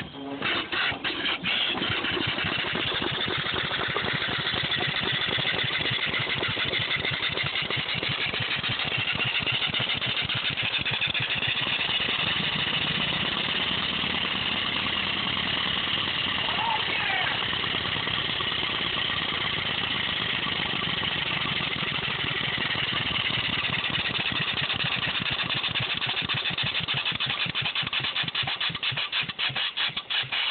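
A 12 HP Briggs & Stratton lawn-tractor engine converted to run on steam, running with a rapid exhaust beat over a hiss of escaping steam. The beat picks up speed in the first couple of seconds and slows and spreads out again near the end.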